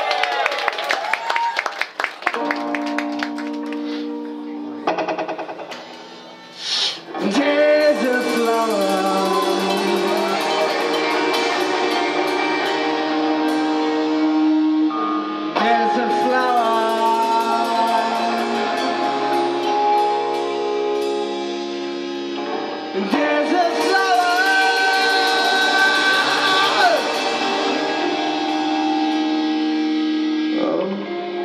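Two electric guitars playing a song's instrumental opening live. Quick picked notes come first, then ringing held chords with sliding notes. The playing drops quieter around six seconds in and comes back fuller.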